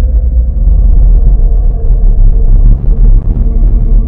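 Dark ambient drone: a loud, dense low rumble that runs steadily, with a faint held tone above it.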